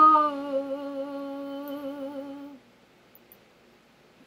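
A woman's voice, unaccompanied, humming one long held note with vibrato that softens about a third of a second in and dies away at about two and a half seconds, leaving near silence.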